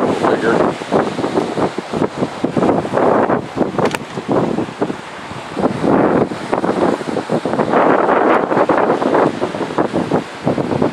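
Wind buffeting the camera's microphone in uneven gusts, a loud rough rushing that swells and dips every second or so.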